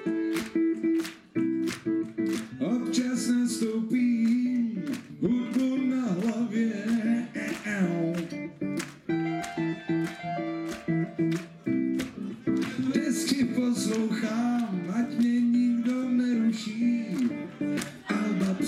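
Live band playing a fast song, with bass and guitar, a gliding vocal line and an even run of sharp hits keeping the beat.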